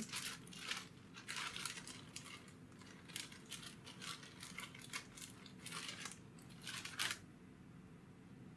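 Clear plastic bag rustling and crinkling in a string of short rustles while puppets are handled in and out of it. The last rustle, about seven seconds in, is the loudest, and then it stops.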